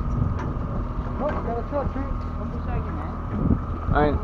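Fishing boat's engine running with a steady drone, wind buffeting the microphone, and faint distant voices of other anglers.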